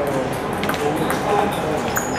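Table tennis ball clicking off paddles and the table during a rally: a few sharp taps.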